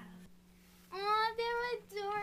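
A child singing, starting about a second in with long held notes after a brief near-silent pause.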